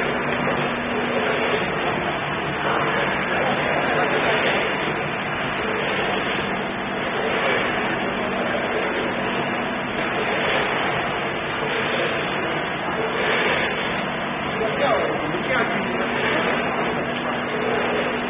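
Steady noise of running machinery with a constant low hum, under indistinct background voices.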